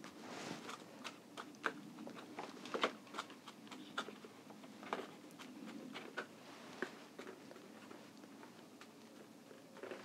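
Faint, irregular soft crunches and clicks of a mini trowel pressing airy seed-starting mix down in small plastic seedling pots, firming the soil onto sown seeds.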